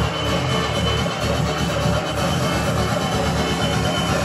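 Electronic dance music from a DJ set playing steadily over a nightclub's sound system.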